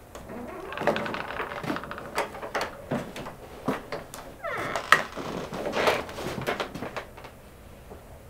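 Irregular knocks and clatter, like doors and cupboards being handled, with a short rising squeak about four and a half seconds in.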